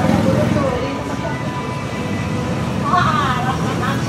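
Steady low rumble of passing road traffic, with brief faint voices near the start and about three seconds in.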